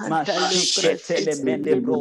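A voice praying aloud in tongues: rapid, unintelligible syllables with a long drawn-out 'sh' hiss about half a second in.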